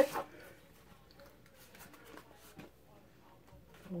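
Near silence in a small room: faint room tone with a few soft, scattered small clicks and rustles.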